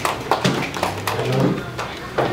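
Low male speech in a small room, broken by several short sharp clicks and knocks in the first second.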